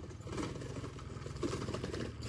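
A small motorbike engine running steadily, a low even drone with a fast pulse, fairly quiet.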